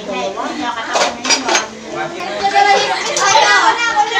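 Several people talking at once in a small room, with a few clinks of a spoon and fork against a plate about a second in.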